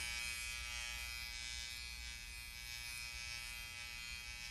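A steady, even electric buzz with many fine tones and a faint hiss, unchanging throughout, with no other events.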